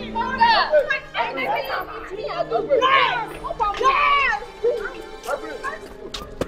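Several people shouting and crying out in high, excited voices, with film background music running underneath.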